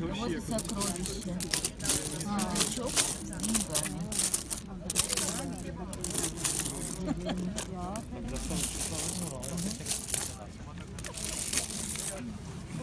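A heap of loose metal coins clinking and sliding as a wooden scoop digs through them and tips them back, a dense run of clinks throughout.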